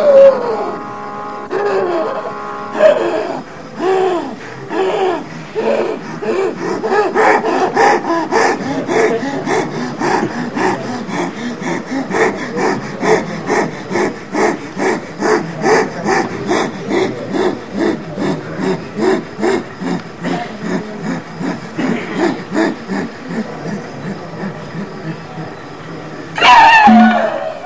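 Kathakali percussion accompaniment: drums and cymbals keeping a steady rhythm of about three strokes a second, after a looser opening.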